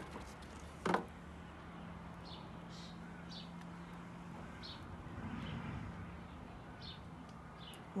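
A single sharp knock about a second in, then faint, scattered high chirps like a small bird's. A low steady hum runs through the first half.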